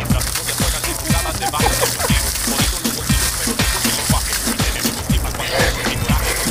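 A bucket of ice water pouring and splashing over a seated person and onto the pavement, as a steady hiss. Background music with a regular beat plays over it.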